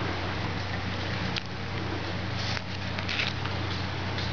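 Netting cord and a gloved hand rustling and scraping in a few short bursts as a net knot is worked over a wooden mesh gauge, over a steady low hum.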